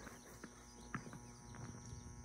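Quiet, with a few faint short clicks and a faint steady high tone behind them.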